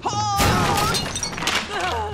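A man's long, wavering cry with a loud smash of wooden furniture breaking about half a second in and more crashing a second later, then a falling groan near the end: a fighter thrown into tables and chairs.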